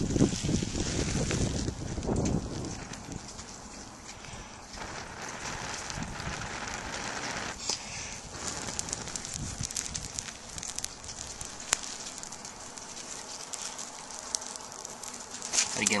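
A person blowing into a dry-grass tinder bundle that holds a smouldering ember, coaxing it to flame. The breaths rush against the microphone, strongest in the first few seconds, and the tinder crackles and hisses as it catches, flaring up near the end.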